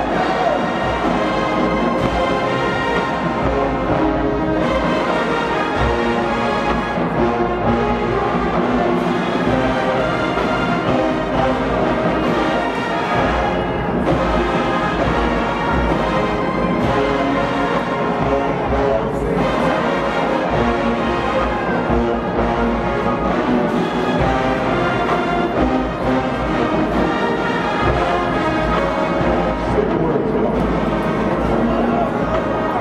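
HBCU marching band playing a full arrangement, brass over drums, loud and unbroken.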